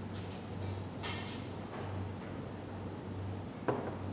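Water poured from a glass pitcher into a small metal jigger, a brief splash about a second in, then a sharp metallic clink near the end, over a steady low hum.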